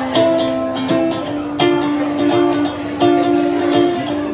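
Ukulele played live, plucked notes and chords ringing out one after another in a slow, unhurried pattern.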